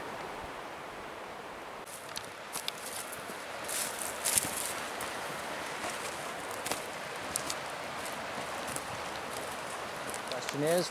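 Rustling and scattered light clicks of a small bilge pump and its hoses being handled and carried through dry brush, over a steady outdoor hiss. The pump itself is not running.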